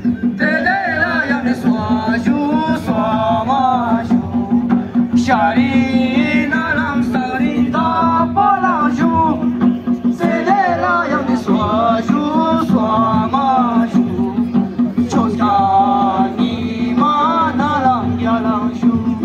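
Ladakhi folk song performed for a traditional dance: male voices singing a wavering melody, with instrumental accompaniment over a steady low drone.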